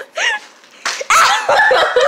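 Girls' voices squealing and laughing, loud and high, with a sharp smack about a second in just before the loudest squealing.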